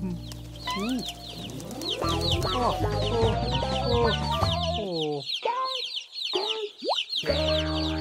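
A crowd of cartoon ducklings peeping, many short high chirps overlapping in quick succession, over light cartoon music. Near the end there is a quick rising whistle effect.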